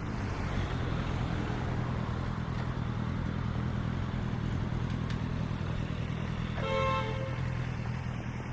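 Street traffic with a steady low engine hum from road vehicles, and a short pitched tone about seven seconds in.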